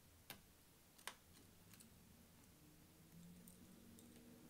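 Two sharp clicks about a second apart, then a few fainter ticks: a small screwdriver clicking against tiny screws and the metal SSD bracket inside an open laptop.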